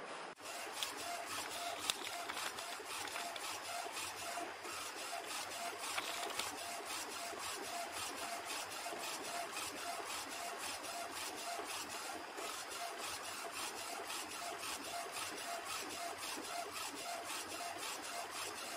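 Small UV flatbed printer running a print job: the print-head carriage shuttles back and forth with a steady mechanical run, regular ticking and a short tone repeating about twice a second.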